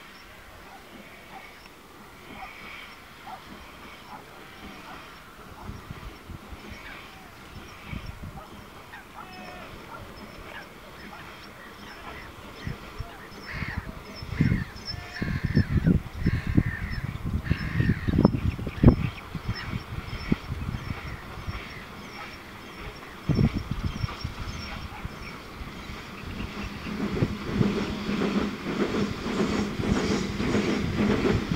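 Birds call again and again in short repeated calls, with spells of low rumbling around the middle. Near the end, the low rumble of an approaching Gr-280 steam locomotive and its train grows louder.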